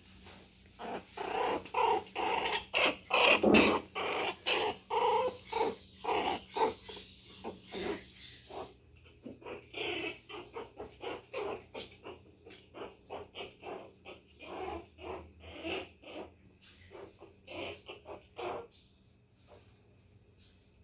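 A small dog barking in quick short barks, two or three a second. The barks are loudest in the first eight seconds, then come fainter and stop a little before the end.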